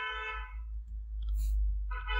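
A voice trails off, then a low steady rumble on the recording with a few faint computer-mouse clicks as a mesh item is deleted in the software.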